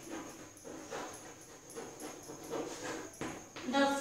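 Chalk writing on a blackboard: an irregular run of short taps and scrapes as a word is written.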